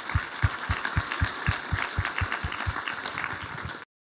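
Audience applauding in a lecture hall, a dense patter of many hands with steady low thumps about four a second, cut off abruptly near the end.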